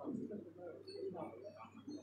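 A woman speaking into a microphone at a lectern, her voice carried over a public-address system with a steady low electrical hum beneath it.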